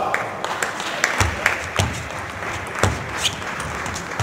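Table tennis rally: a celluloid ball clicking sharply off bats and table about six times at an uneven pace, over the steady background noise of a large hall.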